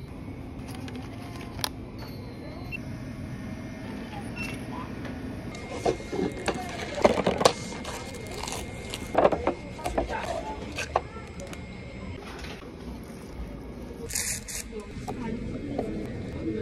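Plastic shrink-wrap crinkling and crackling in bursts as an instant noodle cup is handled and unwrapped, with a short higher rasp near the end as the wrap or lid is torn.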